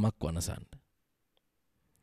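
A man speaking into a microphone, his words breaking off under a second in, then a pause of silence with one faint click.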